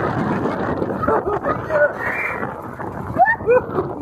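Spinning wild-mouse roller coaster car running along its steel track: a steady rumble of wheels and wind on the microphone, with a few short rising vocal whoops from riders near the end.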